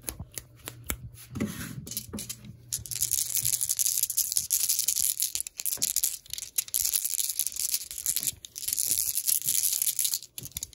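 Fingers rapidly scratching and rubbing a coarse woven fabric drawstring pouch, a dense, high scratching hiss that sets in about three seconds in and runs on with brief breaks. Before it come scattered light taps and clicks.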